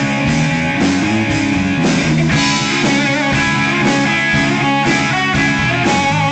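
Live rock band playing an instrumental passage: electric guitars and drums, with a harmonica wailing over the top.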